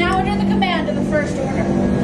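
Voices talking over a steady low hum from the ride's ship-interior soundscape.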